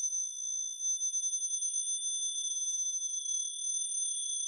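Several high, thin electronic sine tones held together as a steady chord, with a slight flutter in loudness: a sustained passage of an acousmatic (fixed-media electroacoustic) composition.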